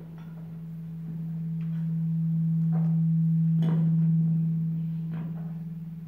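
A steady low pure tone that swells to its loudest around the middle and then fades, with a few faint clicks of vessels being handled on the altar.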